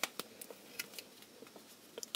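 Faint handling noise: a sharp click at the start, then a few light ticks and rustles as hands flip up a strip of duct tape and pick up a pen on a cutting mat.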